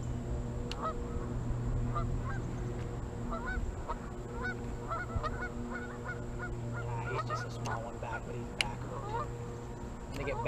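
Many short birdlike calls, each rising and falling in pitch, repeating through the whole stretch over a steady low hum.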